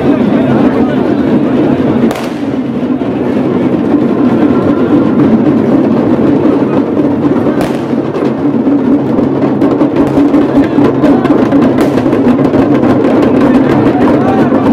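Music with drums and percussion playing over the voices of a large, dense crowd, with sharp strikes coming more often in the second half.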